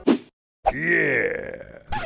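A man's drawn-out cry of shock, an 'oh my goodness' exclamation whose pitch rises and falls, starting about half a second in after a brief sound and a moment of silence.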